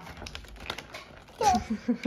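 A cardboard advent calendar being handled: a quick run of light clicks and taps, followed about one and a half seconds in by a young child's short vocal sounds.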